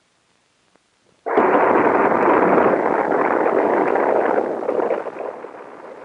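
Saturn IB first stage with its eight H-1 rocket engines firing in a static test: after about a second of silence a loud rocket roar starts suddenly, holds steady, and falls off gradually over the last couple of seconds.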